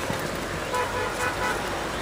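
A vehicle horn tooting faintly a little before the middle, over steady outdoor background noise.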